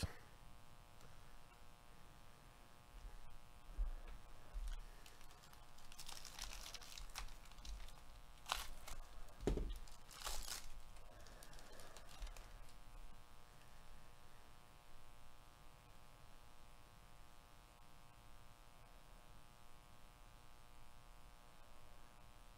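Faint tearing and crinkling of a foil trading-card pack being ripped open, in a few short bursts in the middle, the loudest just past halfway, amid soft shuffling of cards.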